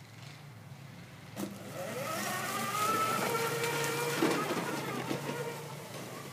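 A four-wheeler's motor pulling away: a click about a second and a half in, then a whine that rises in pitch, holds steady, and eases off near the end.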